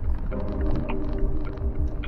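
Off-road vehicle's engine droning steadily over a low rumble while driving a bumpy dirt trail, with short sharp rattles and knocks, heard from inside the cab.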